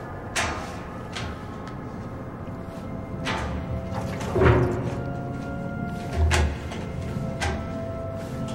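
Tense film score: a steady held drone with sudden sharp hits scattered through it. The loudest is a falling swoosh about halfway, and a low thud follows a little after six seconds.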